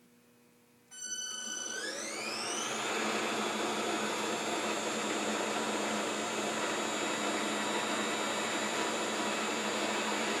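Pratt & Whitney 1/2B×30 deep hole gundrilling machine starting a cycle: about a second in its drive motors start, a whine rising over about two seconds as they come up to speed, then running steadily with a whir.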